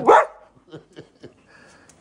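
Siberian husky giving one short, loud "nooo"-like cry right at the start, its pitch rising then falling, followed by a few faint clicks.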